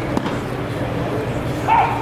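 A baseball pops into the catcher's mitt with a sharp smack a fraction of a second in. Near the end comes a short, high yelp that rises and falls, the loudest sound here.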